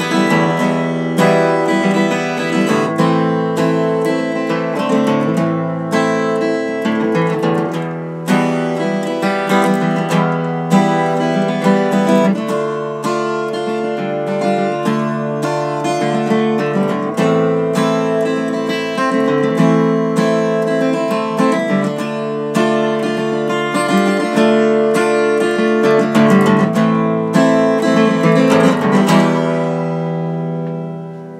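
Steel-string acoustic guitar strummed and picked in a steady chord pattern, without singing. The strumming gets busier near the end, and the last chord is left ringing and fading.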